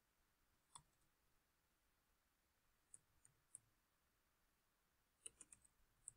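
Near silence broken by faint computer keyboard keystrokes: a single click, then three spaced clicks, then a quick run of five or six near the end as a word is typed.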